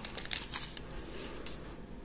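Soft rustling and a few light clicks from a strip of small plastic sachets of diamond-painting rhinestones being handled.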